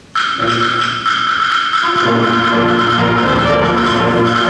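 Middle school concert band playing. The music starts suddenly with high held notes, and the lower parts come in about two seconds in.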